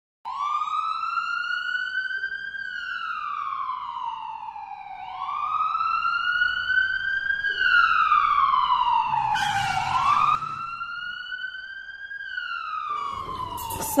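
Ambulance siren wailing, its pitch rising and falling slowly, about five seconds per cycle. A short burst of hiss comes about nine and a half seconds in, and just after it the siren drops to a lower level.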